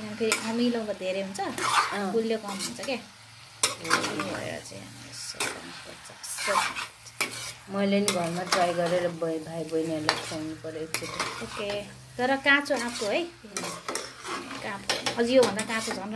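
A metal spatula stirs and scrapes strips of raw green mango in a nonstick kadai, with repeated knocks of the spatula against the pan and sizzling oil. The scrapes sometimes have a squeaky, wavering pitch.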